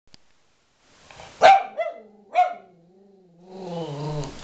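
Cavalier King Charles Spaniel barking sharply twice, then giving a long, low growl that swells near the end: angry vocalising aimed at its owner.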